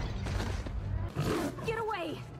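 A cartoon creature's beastly roar, voiced and falling in pitch over about a second in the second half, after a second of noisy action sound effects.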